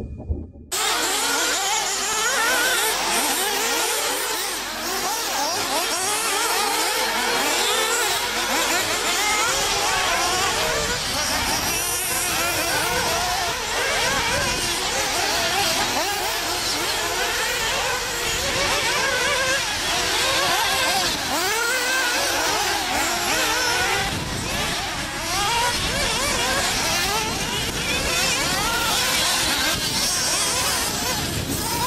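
Several radio-controlled 4x4 off-road buggies racing on a dirt track. Their motors whine, rising and falling in pitch as they speed up and slow down through the corners, and the sound starts just under a second in.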